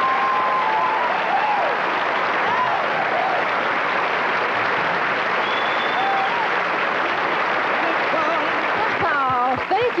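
Studio audience applauding and cheering steadily, with a brief high whistle about halfway through.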